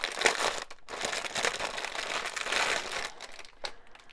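Thin clear plastic bag crinkling and rustling as it is opened and a bundle of small packets of diamond-painting drills is pulled out. The noise gets quieter near the end.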